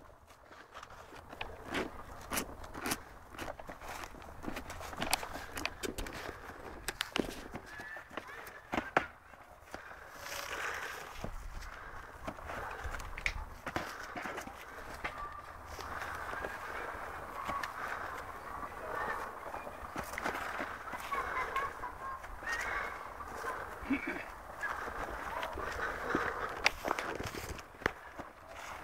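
Boxing-glove punches in a sparring round: an irregular run of short, dull slaps as padded gloves land on gloves and body, with faint voices in the background.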